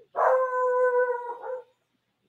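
A dog letting out one long call at a steady pitch, lasting about a second and a half, warning off squirrels.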